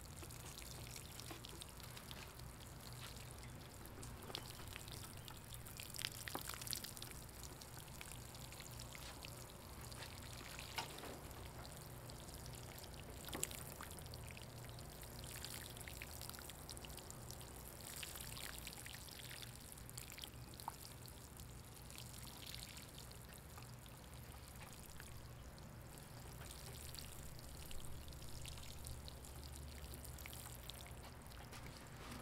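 Water from a plastic watering can sprinkling steadily onto soil, a faint continuous pour with a few sharper splash ticks.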